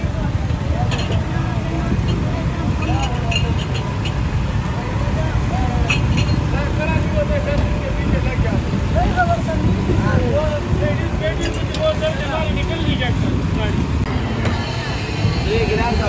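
Busy roadside street noise: a steady low rumble of passing traffic with indistinct background voices, and a few brief clicks and rustles from the vendor tying a plastic bag.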